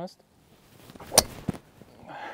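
A golf driver striking a teed-up ball: a single sharp, loud crack a little over a second in, after a faint rising rush, with a fainter knock just after.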